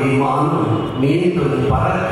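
A man's voice speaking with a chant-like, intoned delivery, continuing with only a brief pause in the middle.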